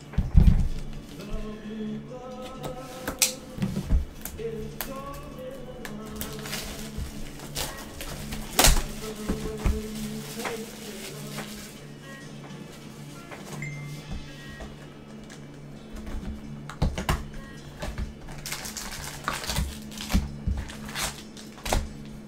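Background music over scattered clicks, taps and knocks from a cardboard trading-card hobby box being handled and opened, the loudest knock about half a second in.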